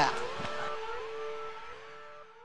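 The fading tail of a TV show's logo bumper sound effect. A held note with a few sliding tones over a hiss dies away steadily.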